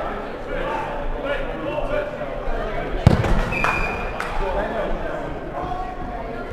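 A dodgeball hits hard once about halfway through, followed about half a second later by a short, steady referee's whistle blast, as the point ends. Players' shouts and chatter run throughout.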